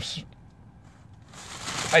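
After a brief lull, a plastic bag wrapped around a filter in a cardboard box crinkles and rustles as a hand reaches into it, starting a little past a second in and growing louder.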